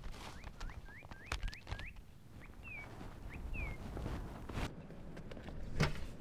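A bird sings a quick run of about seven rising whistled notes, then two slower falling ones, over outdoor ambience. Footsteps of someone running on pavement tap along underneath, and a thump comes near the end.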